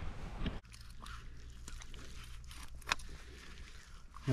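Faint crunching and snapping of sticks and brush being handled at a muddy riverbank, over a low steady rumble, with one sharper click about three seconds in.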